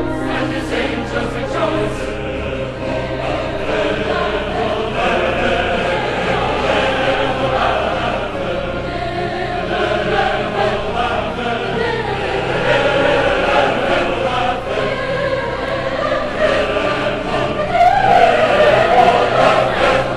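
Large choir singing with orchestra in a classical oratorio passage, with sustained chords that swell louder near the end.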